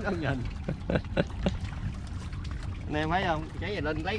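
Brief bits of a man's voice at the start and about three seconds in, with a few sharp clicks about a second in, over a steady low rumble.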